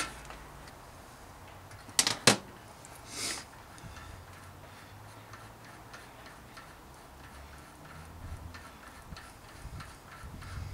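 Sharp metallic clicks, a close pair about two seconds in, then a long run of faint, light ticking as a 10 mm Allen socket unscrews the bolt holding a rear hub's freehub body.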